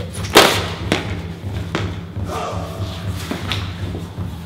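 A person falling onto a concrete floor: one loud, heavy thud about half a second in, followed by a few lighter knocks. A steady low backing sound runs underneath.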